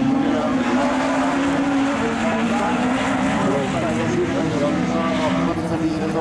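Rallycross race cars running at speed on the track, several engines heard at once from across the circuit, their pitches wavering and overlapping as the cars accelerate and lift.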